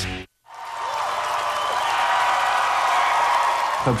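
Concert crowd applauding and cheering, fading in after a brief dead gap and holding steady until a man starts speaking near the end.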